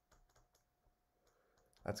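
Faint, irregular light clicks and taps of a stylus on a graphics tablet as handwriting is written, then a voice begins near the end.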